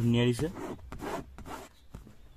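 A man's voice for the first half second, then several short rough rubbing scrapes as a hand works over the car's armrest and seat-cover upholstery, dying away about a second and a half in.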